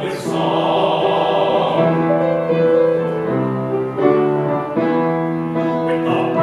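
Male vocal ensemble singing slow, held chords in harmony, the chord shifting every second or so.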